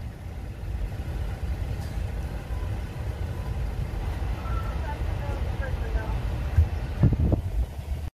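Steady low rumble of a car, heard inside the cabin, with faint voices in the middle and a short voice sound near the end.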